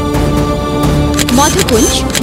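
Television show theme music: held steady notes, then about one and a half seconds in a line that sweeps and bends up and down in pitch.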